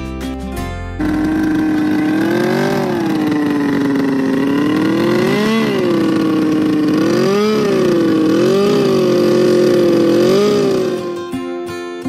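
Snowmobile engine running loudly, its pitch rising and falling several times as the throttle is worked. It cuts in about a second in and fades out near the end, with guitar music before and after.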